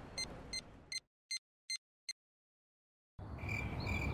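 Cartoon electronic beeping from a planted tracking device: a rapid series of short, high beeps, about three a second, that stop about two seconds in. After a second of silence a quiet night ambience with chirping crickets comes in near the end.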